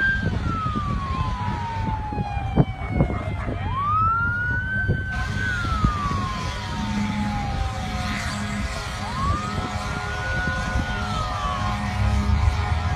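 Emergency-vehicle siren wailing in slow cycles, each one rising quickly to a high note, holding it, then falling slowly over several seconds, with a steady low rumble beneath.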